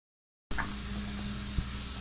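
A steady low hum, cutting in about half a second in, with one short click near the end.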